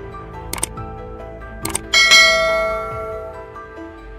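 Subscribe-button sound effect over background music: two quick double clicks about a second apart, then a bright bell chime about two seconds in that rings and fades out.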